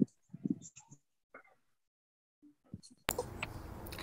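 Video-call audio, mostly near silence with a few faint, short sounds, as a played video's sound fails to come through the call. About three seconds in, a participant's microphone opens and a steady hiss of room noise starts.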